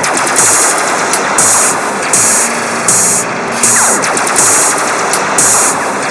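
Electronic music from an iPad synthesizer and 808-style drum machine, with no vocals. A dense noisy wash runs under bright bursts of hiss that come about twice a second, and a few falling pitch sweeps pass through.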